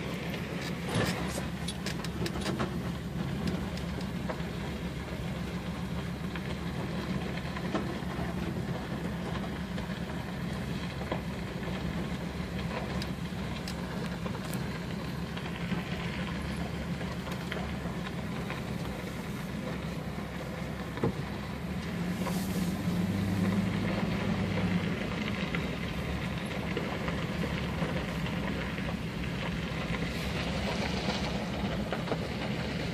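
A vehicle driving slowly on a gravel road, heard from inside the cab: steady engine and tyre noise with scattered small clicks of gravel. The engine note grows louder for a few seconds about three quarters of the way through.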